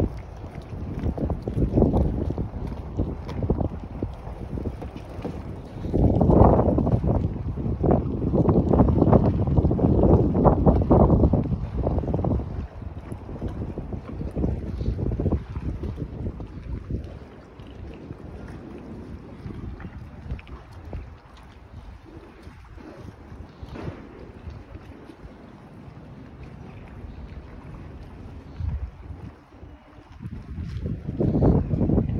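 Wind buffeting the phone's microphone in irregular low rumbling gusts. The gusts are strongest for several seconds a little before the middle, then ease to a softer rumble.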